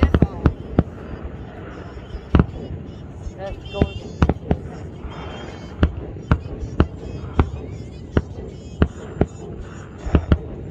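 Aerial fireworks shells bursting in a display. The bangs come as a quick run of four in the first second, then one every half-second to a second or so.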